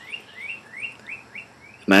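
A bird chirping: a quiet run of about seven short, rising notes, about four a second.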